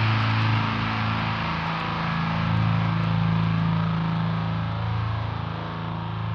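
Death metal music: heavily distorted electric guitars holding a low, sustained chord, dipping slightly in level near the end.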